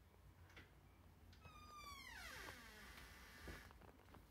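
A single animal cry, falling steadily in pitch and lasting about a second, starting a little before halfway through, over a faint low hum.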